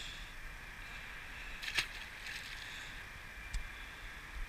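Faint steady background noise, broken by one sharp knock a little under two seconds in and a smaller tick near the end.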